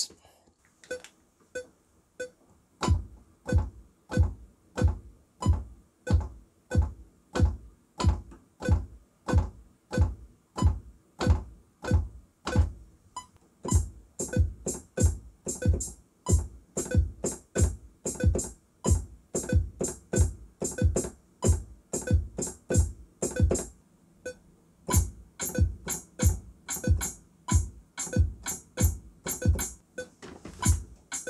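Programmed electronic drums for a tarraxa-style kizomba beat: a steady deep beat about twice a second. A fast hi-hat pattern comes in about halfway, drops out briefly and then returns near the end.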